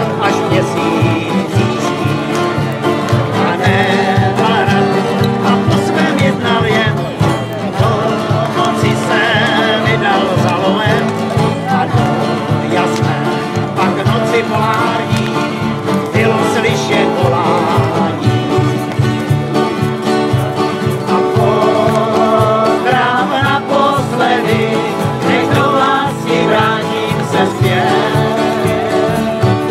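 Several acoustic guitars strummed together in a steady country rhythm, with a man singing a tramp-style country song over them.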